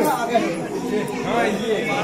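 Overlapping chatter of several voices talking at once, children's voices among them.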